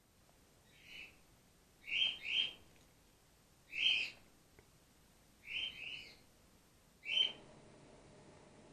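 Short high-pitched animal calls, seven in all: one faint call, then a quick pair, a single, another pair and a last single.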